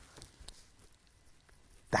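A pause in a man's talking. There is only faint room tone and a few soft short sounds in the first half-second, and then his speech starts again at the very end.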